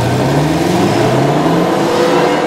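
Supercharged 6.2-litre V8 of a 2015 Dodge Charger SRT Hellcat revving, its pitch climbing twice in quick succession.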